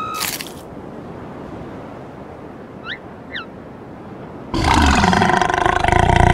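A cartoon woman's loud, drawn-out wailing cry, starting suddenly about four and a half seconds in. Before it there is a faint steady hiss with two short high chirps.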